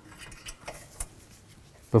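A few faint, light clicks and taps of automotive parts being handled, over quiet room noise.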